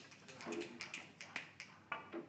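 Snooker balls clicking sharply against each other and the cushions, about half a dozen short clicks in two seconds.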